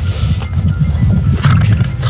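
Royal Enfield Himalayan's 411 cc air-cooled single-cylinder engine running under load as the bike rides along a rough dirt field track, a loud, uneven low rumble.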